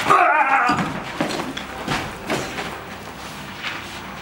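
A loud, short yell with a wavering pitch in the first moment of a staged fight. It is followed by scuffling and several short knocks as a man is wrestled down onto a concrete floor.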